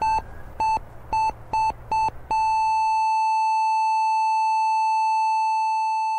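Hospital heart monitor beeping, the beeps coming faster and faster, then turning about two seconds in into one long unbroken tone: a flatline, the patient's heart stopping.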